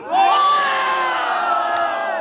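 Crowd of spectators letting out one long collective shout, many voices held together, in reaction to a rapper's punchline at the end of his battle verse. The shout starts suddenly, slides slowly down in pitch and fades gradually.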